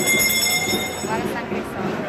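A high-pitched squeal of several steady tones starts suddenly, holds for just over a second and cuts off abruptly, over a crowd's chatter.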